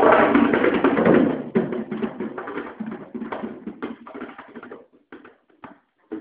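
Solo drum kit played with rapid, dense strokes that thin out after about a second and a half into sparse, light taps, growing quieter toward the end. Heard through a camera phone's microphone, with the top end cut off.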